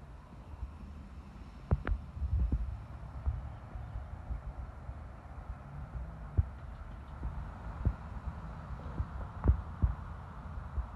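Low outdoor rumble of wind and handling noise on a phone's microphone, with several irregular soft thumps; the loudest come about two seconds in and near the end.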